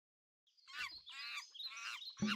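Faint bird chirping: three short warbling calls in quick succession, starting just under a second in.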